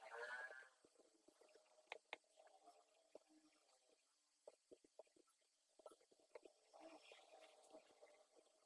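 Near silence with faint, scattered computer keyboard keystroke clicks as code is typed, after a brief voiced murmur at the very start.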